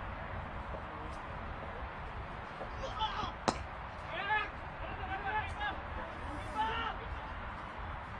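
Faint voices over a steady background hiss, with a few sharp clicks, the clearest about three and a half seconds in.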